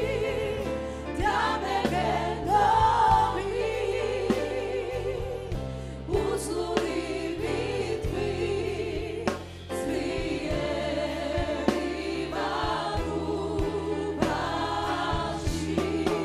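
Worship choir of mostly women's voices singing a gospel-style song together, led by soloists on microphones, with wavering, sustained sung notes.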